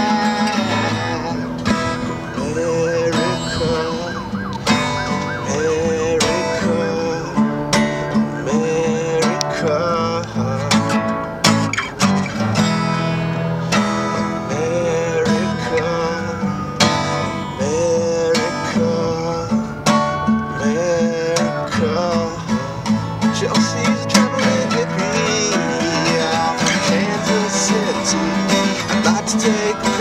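Acoustic guitar strummed in a steady rhythm as part of a song, with a wavering melody line running above it.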